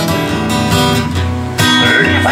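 Electric guitar strumming chords with no singing; a fresh, louder chord comes in about one and a half seconds in.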